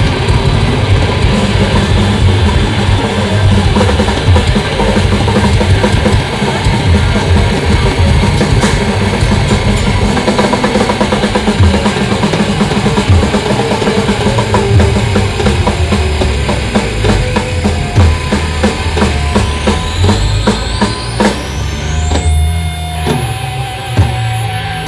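A live extreme metal band at full volume: distorted guitar and bass over fast, pounding drums. Near the end, rising whining tones sweep upward, the full band drops away, and a held tone is left with a few scattered drum hits.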